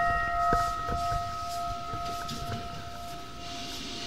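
A temple bell's ring dying away after a single strike, several steady tones fading slowly, with a few faint knocks.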